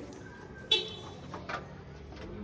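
A sharp knock with a brief ringing tone under a third of the way in, then a softer knock about a second later.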